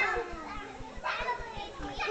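Children's voices at play: brief high calls about a second in, and a laugh near the end.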